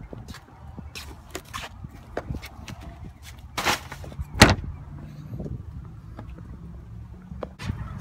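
Clatter and knocks from plastic wheelie trash bins as rubbish goes in and the lid is handled, with one sharp bang about four and a half seconds in, the loudest sound.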